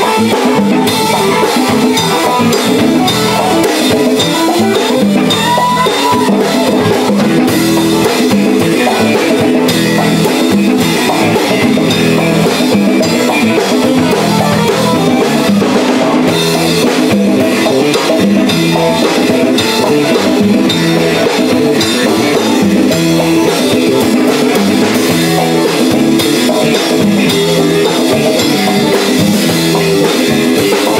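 A live band playing a funk instrumental passage: a drum kit keeping the beat under electric bass and keyboard, with no singing.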